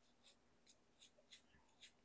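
Near silence with a few faint light clicks and scratches as a small cleaning brush is handled and pushed into its slot in a window-cleaning tool.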